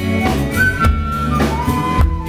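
Live band playing Black Sea folk music, with bass, drums and a high held lead melody that slides between notes.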